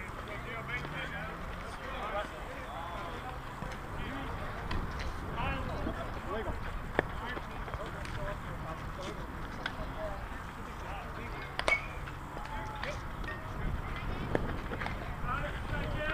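Players' voices calling and talking across an outdoor softball field, with a low rumble of wind on the microphone. Two sharp knocks stand out, about seven seconds in and, louder, near twelve seconds.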